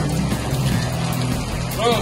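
A parked SUV's engine idling with a steady low hum, over an even hiss of rain on wet pavement. A man's voice says one short word near the end.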